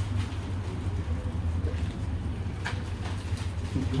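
Steady low hum of room background noise, with a few faint soft clicks about two and a half and three and a half seconds in.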